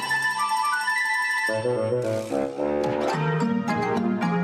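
Cheerful instrumental theme music. It opens with about a second and a half of bright, ringing, bell-like tones with no bass, then a fuller melody with a bass line comes back in.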